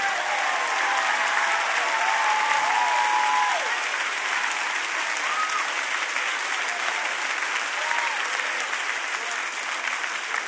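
Large congregation applauding, with a few voices calling out over the clapping. The applause eases off a little after about three and a half seconds but keeps going.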